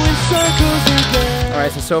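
Background music, with sustained pitched notes over a steady bass line. A man's voice comes in at the very end.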